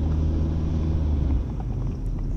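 Low steady motor-like hum, easing a little after about a second and a half.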